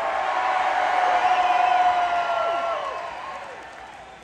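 Large concert crowd cheering and whooping, with one long held yell over the noise; the cheer fades away towards the end.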